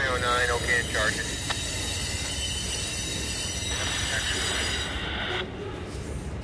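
Freight hopper car wheels squealing against the rails as the cars roll slowly past. A high screech glides down in pitch in the first second, then settles into a steady high squeal with hiss that cuts off suddenly about five and a half seconds in.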